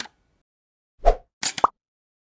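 Cartoon pop sound effects of an animated logo intro: a single pop with a low thump about a second in, then a quick double pop near the end, the last with a short rising tone.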